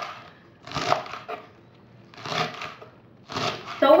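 Kitchen knife slicing through crisp watercress stems on a cutting board: a few short crunching cuts about a second apart.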